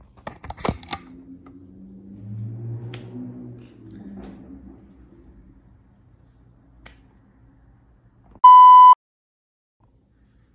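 A few sharp clicks in the first second, then a faint low hum, and near the end a loud electronic beep: one steady tone about half a second long.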